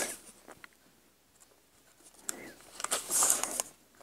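Pages of a spiral-bound recipe book being turned by hand: a soft paper rustle that comes in about halfway through and lasts just over a second.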